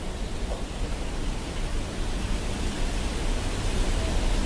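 A steady, even hiss of noise with no distinct events, growing slightly louder over the seconds.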